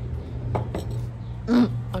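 Steady low electrical hum from outdoor air-conditioner condenser units, with a few light clicks about half a second to a second in. A short spoken "ok" comes near the end.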